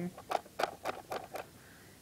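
Thumbwheel of an airsoft AK high-capacity magazine being wound by hand: five or six short ratcheting clicks, about four a second, tensioning the magazine's feed spring.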